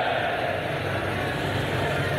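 Steady din of a large crowd at an outdoor gathering, with a low hum underneath.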